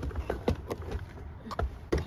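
Doona infant car seat being unlatched and lifted out of a car: a series of short plastic and metal clicks and knocks, about six in two seconds, over a low rumble.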